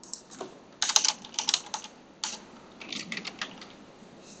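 Typing on a computer keyboard in a few short runs of quick keystrokes, editing a line of code.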